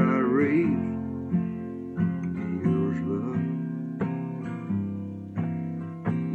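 Takamine steel-string acoustic guitar with a capo, strummed chords ringing between sung lines of a slow country ballad. A man's sung note trails off in the first second; after that the guitar plays alone, a fresh strum every half-second to a second.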